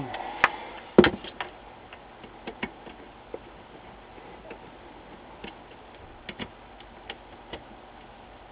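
Handling knocks of an LCD monitor's metal panel chassis as it is turned over and set down, two sharp knocks within the first second, then scattered light clicks and ticks of a screwdriver and fingers working at small Phillips screws on the metal frame.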